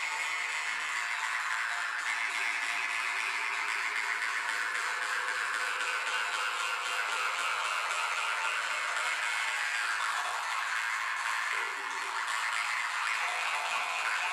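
An ensemble of Yakut khomus (metal jaw harps) playing together: a dense, steady twanging buzz whose overtones shift up and down like a melody, dipping briefly about twelve seconds in.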